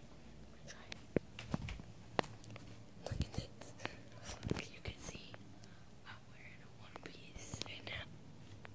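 Hushed whispering, with scattered short clicks and rustles.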